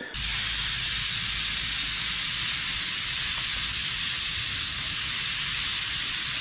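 Two fillet steaks frying in a camping frying pan over a gas canister stove: a steady sizzling hiss with a low rumble under it.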